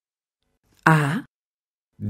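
One short vocal sound, a single syllable whose pitch falls, about a second in, with silence either side.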